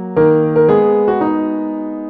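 Background piano music: chords struck about three times, each ringing on and slowly fading.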